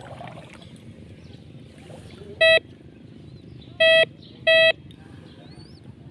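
Metal detector giving three short, high beeps, the first alone and the last two close together, as its search coil passes over a metal target in shallow seawater. Under them runs a steady low background noise.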